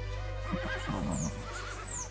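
A horse whinnies: a quivering, wavering call lasting well under a second, starting about half a second in, over a low steady drone from the film score.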